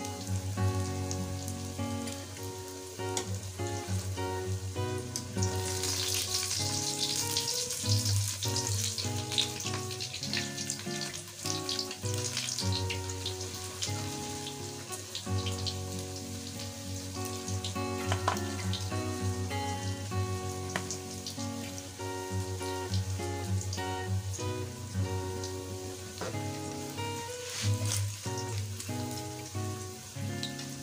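Lentil mixture frying in a little oil in an iron karahi, sizzling loudest from about six to thirteen seconds in, with occasional sharp scrapes of the spatula against the pan. Instrumental background music with sustained notes plays throughout.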